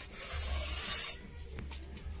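A hand rubbing and smearing clay paste over the outside of a steel pot lid, giving an even scraping hiss that stops a little past halfway.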